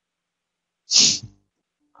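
One short burst from a man's voice about a second in, hissy at the start and lasting under half a second.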